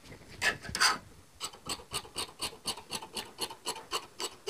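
Large tailor's shears cutting through cotton fabric on a table. After two louder clicks at the start comes a regular run of short snips, about four to five a second.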